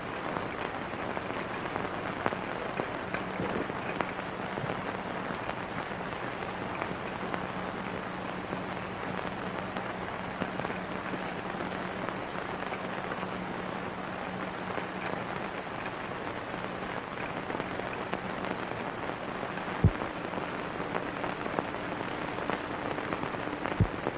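Hiss and crackle of an old optical film soundtrack, with a faint steady hum through most of it and two sharp pops near the end.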